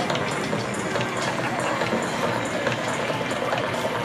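Steady rushing noise of a Bombardier CRJ200's two rear-mounted GE CF34 turbofan engines at takeoff power as the regional jet rolls down the runway.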